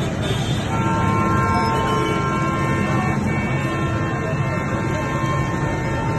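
A vehicle horn held down as one steady note from about a second in, over the hubbub of a street crowd.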